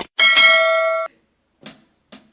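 A click sound effect followed by a single bell ding from a subscribe-button animation, signalling subscribe and notification bell. The ding rings for about a second and then cuts off.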